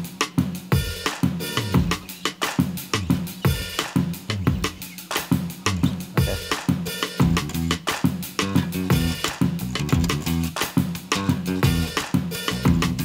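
Electric bass guitar playing a bass line over a drum beat triggered from an Akai MPC's pads: kick and snare hits in a steady, even groove.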